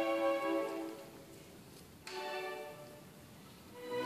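String chamber orchestra playing softly: a held note fades away, a short quiet chord sounds about two seconds in and dies off, and the full ensemble comes back in loudly at the very end.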